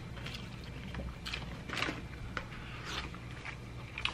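Soft rustling of butcher paper and a few light clicks as barbecue brisket is handled and pulled apart by hand, over a steady low room hum.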